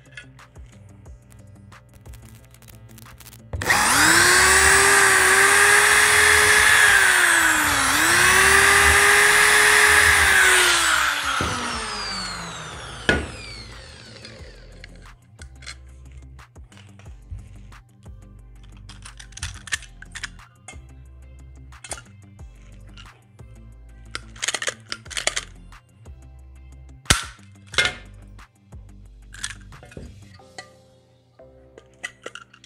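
Corded electric drill running at full speed for about seven seconds, slowing briefly midway and picking up again, then winding down with a falling whine. This is drilling small rivet holes in aluminium door profile. Scattered light clicks and clinks of metal parts being handled follow.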